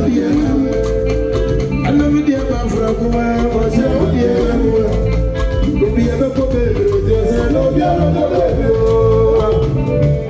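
Live highlife band playing through a PA, with singing over electric guitar, drum kit and hand drums at a steady, loud level.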